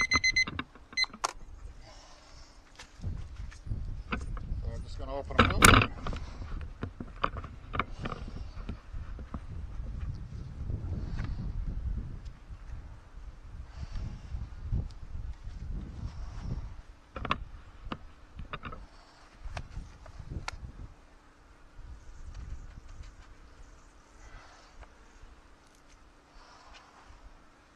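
A digital kitchen timer beeps briefly at the start. Then come scattered clicks and knocks from handling beehive equipment, over a low rumble, with one louder knock about six seconds in.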